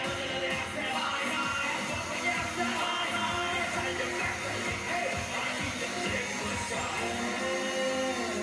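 Live electronic dance-pop song played at a concert, with a steady beat and vocals.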